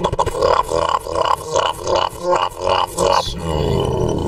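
Human beatboxing: vocal drum hits and bass sounds made with the mouth, in a steady rhythm of about three hits a second. It gives way to a held, gliding low sound near the end.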